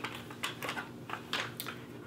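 Irregular light clicks and taps from handling a clear plastic sunglasses display holder loaded with sunglasses, as the glasses and the plastic tiers knock together.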